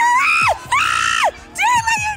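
Excited, very high-pitched screaming: two drawn-out shrieks that rise and hold before falling away, followed by shorter squeals near the end.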